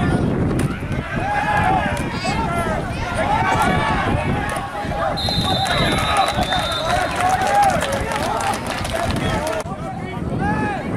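Many voices shouting and yelling over one another, as from spectators at a football game. A steady, shrill whistle sounds for about two seconds midway.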